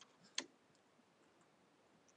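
Near silence, broken by a single short click about half a second in: a computer mouse click.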